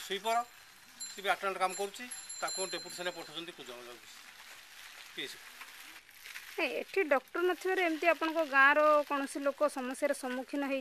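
Speech: a voice talking, a quieter pause of about two seconds, then talk resuming more loudly.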